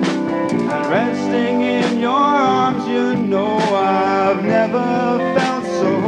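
Live rock band playing an instrumental passage: electric bass, keyboard and drums under a lead melody with bending notes, with cymbal strikes about every two seconds.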